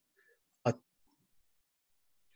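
A pause in a man's speech, broken about two-thirds of a second in by one short spoken syllable, "a"; otherwise near silence.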